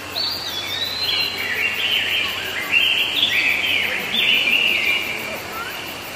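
Small birds chirping and singing, several overlapping calls made of quick rising and falling notes, busiest through the middle.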